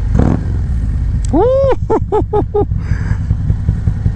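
Harley-Davidson CVO Road Glide's V-twin, fitted with an SNS 128 big-bore kit, running steadily under way. Over it, from about a second and a half in, a person laughs: one long note, then several short ones.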